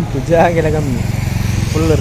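Small motorbike engine running steadily at low speed, under a man's speech.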